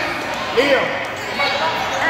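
Children and adults talking and calling out over one another in a reverberant gymnasium, with a single thud about half a second in.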